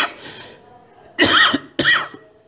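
A person coughing twice in quick succession, about a second in: two short, harsh coughs.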